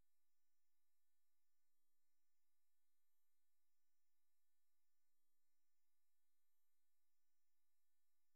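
Near silence, with only a very faint steady electrical hum of a few thin tones.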